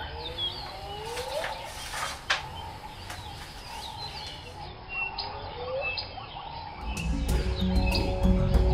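Jungle ambience of assorted bird chirps and swooping calls. Music comes in near the end with low, steady, rhythmic notes and grows louder.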